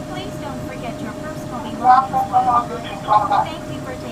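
Running noise in the driving cab of a slowly moving Taoyuan Airport MRT train: a low, even rumble with a steady high-pitched tone throughout. Short bursts of speech come about two and three seconds in.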